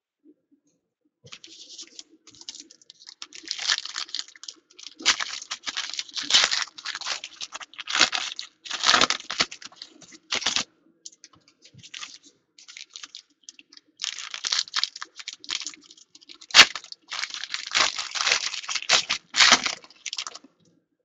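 Foil trading-card pack wrapper being torn open and crinkled by hand, in irregular crackling bursts with short pauses. One sharp snap about two-thirds of the way through stands out as the loudest sound.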